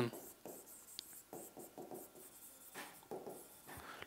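Marker pen writing on a whiteboard: a string of faint, short scratchy strokes.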